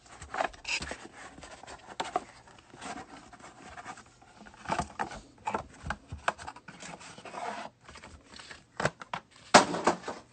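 A plastic pack wrapper of baseball cards crinkling and tearing open, then cards rustling and clicking against each other as a stack is handled and flipped, with a louder rustle near the end.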